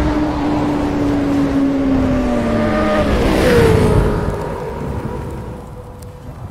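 Sport motorcycle engine sound effect: a steady engine note that sinks slowly in pitch, drops sharply about three and a half seconds in like a bike passing by, then fades away.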